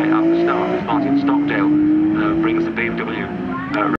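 Rally car engine pulling away under acceleration, its note climbing steadily, dropping with an upshift a little under a second in, then climbing again.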